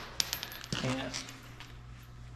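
Short cut-off piece of steel water pipe, just severed by a pipe cutter, dropping onto a concrete floor: a quick run of light metallic clinks in the first half second. A low steady hum runs underneath.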